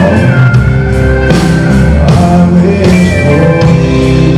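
Live band music: a male singer singing with guitar accompaniment, holding long notes over a steady, loud backing.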